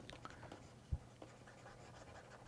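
Faint scratching and light ticking of a stylus writing on a pen tablet, with one soft low knock about a second in.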